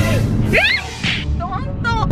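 A swishing whoosh sound effect of the kind edited in at a video cut, with a brief rising tone about half a second in. A woman's voice starts near the end.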